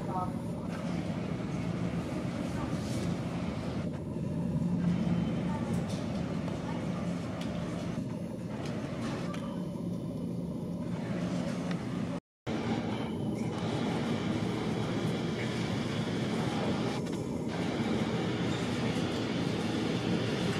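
Airport terminal ambience: a steady hum under the murmur of people talking, cut off briefly about twelve seconds in.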